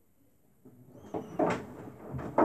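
Samsung Bespoke AI WW11BB704DGW front-loading washing machine in its 50°C main wash: after a quiet pause the drum starts turning again, and wet laundry sloshes and drops through the wash water in a few irregular thumps, the loudest about one and a half seconds in.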